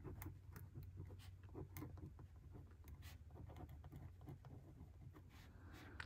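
Faint scratching of a Sharpie Roller 0.5 rollerball pen writing on the grid paper of a Hobonichi Cousin planner: a run of soft, short pen strokes.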